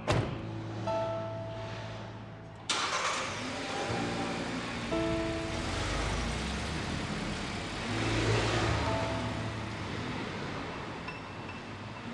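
A car door shuts, and about three seconds later an SUV's engine starts and the car drives off, running steadily, under background music with sustained notes.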